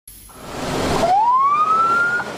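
A rushing noise swells up, then a siren wails upward in pitch from about a second in and levels off.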